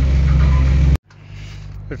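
A sailboat's engine running steadily while the boat is under way, a loud low drone with wind and water noise over it. It cuts off abruptly about a second in, leaving a much quieter background with a faint low hum.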